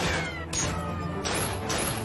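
Movie gunfight sound effects: sharp shots about half a second in and again near the end, with short falling whines. A low, steady music score runs underneath.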